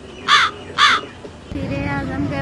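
A crow cawing twice in quick succession, about half a second apart: two short, loud, harsh calls.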